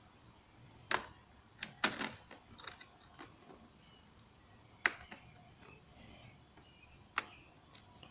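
A few scattered light clicks and taps from a wooden beehive frame being handled while a beeswax foundation sheet is worked in between its wires.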